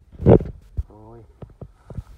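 A loud bump as the camera is handled, then a short vocal sound from a man and a few sharp clicks of gear being moved.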